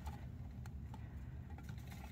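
Faint, scattered light clicks and taps over a low steady hum: a baby chinchilla shifting on the stainless steel pan of a kitchen scale while a hand holds it down.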